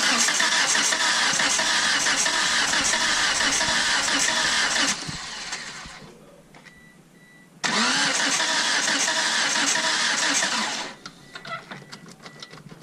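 A car's starter motor cranks the engine twice, about five seconds and then about three seconds, and the engine never catches: the spark plug wires are disconnected, so it was never going to start.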